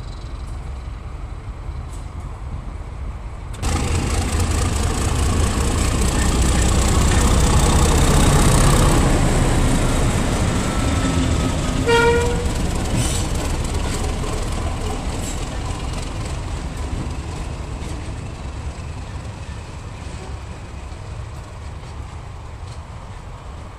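A diesel locomotive's engine running as it passes close by, loudest about eight seconds in and fading as it moves away. A brief horn toot sounds about twelve seconds in.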